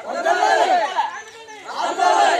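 A group of men shouting protest slogans together, in loud bursts that come about every two seconds.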